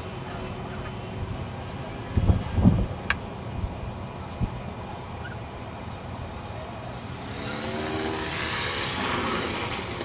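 Electric 450-size RC helicopter coming down in an autorotation. A thin high whine fades in the first two seconds and wind buffets the microphone a couple of seconds in. Near the end the rotor blades' whoosh swells as the helicopter comes in to land.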